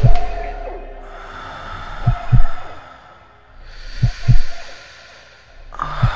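A slow heartbeat-style double thump, deep and loud, repeating about every two seconds over a steady high sustained tone: a soundtrack heartbeat effect in the edit's music.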